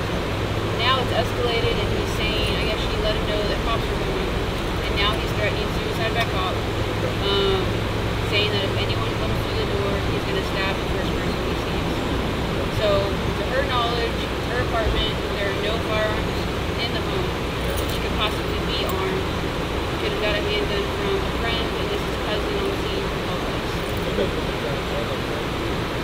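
Indistinct conversation among several people over a steady low hum of idling cars and passing road traffic; one layer of the hum stops about ten seconds in.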